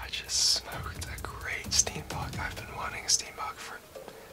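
A man whispering to the camera.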